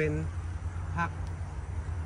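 Speech only: two short spoken words, one at the start and one about a second in, over a steady low rumble.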